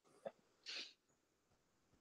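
Near silence on a call's microphone, broken by a faint click and then a short breathy hiss from a person, just under a second in.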